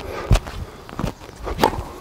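Footsteps on an outdoor hard tennis court, with a few sharp knocks of tennis ball impacts. The last knock, near the end, is a backhand struck with the racket.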